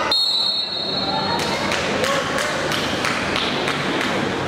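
A referee's whistle blown in one steady blast of about a second, signalling a pin by fall. It is followed by a hall of crowd noise with sharp claps or thuds about three times a second.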